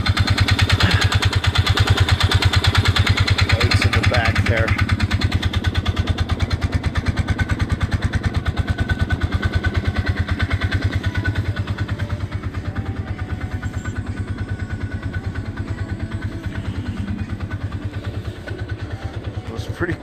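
Polaris side-by-side's engine running steadily, a rapid even run of firing pulses heard from the cab.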